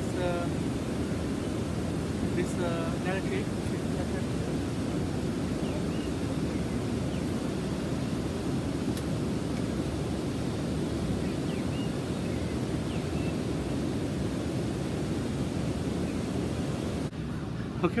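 Steady rush of flowing river water, running near a waterfall. It is an even, constant noise that breaks off near the end.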